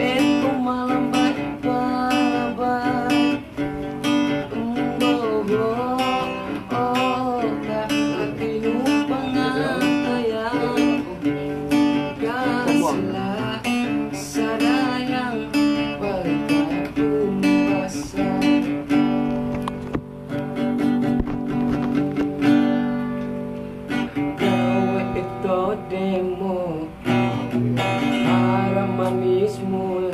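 A man singing while strumming chords on an acoustic guitar; the voice is strongest in the first half.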